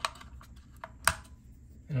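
AA lithium batteries being snapped into the spring-contact slots of a plastic eight-bay battery charger: a sharp click at the start and a louder one about a second in, with faint ticks between.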